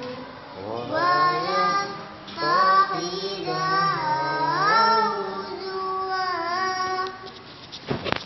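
A child reciting the Quran in the melodic tilawah style: long held notes that glide up and down, broken by short pauses for breath. A sharp knock comes right at the end.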